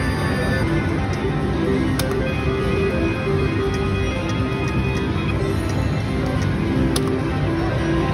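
Electronic tones and jingles from a five-reel slot machine and the casino floor around it, with two sharp clicks about two and seven seconds in.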